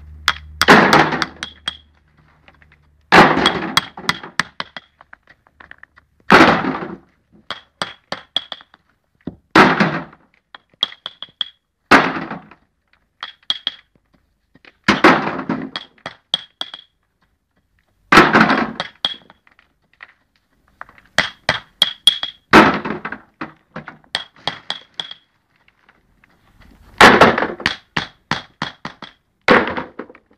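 Small hammer tapping river pebbles down into a sand bed: every few seconds a loud knock followed by a quick run of lighter taps, with sharp stony clinks among them.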